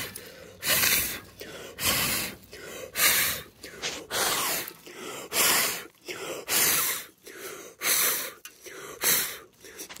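A person blowing hard in repeated puffs, about one a second, blowing ash and spent coals off the lid of a cast-iron Dutch oven.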